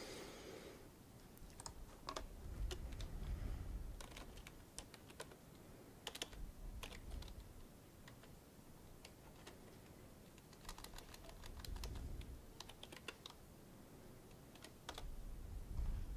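Computer keyboard typing, faint: scattered keystroke clicks in short runs, with a few dull low thumps between them.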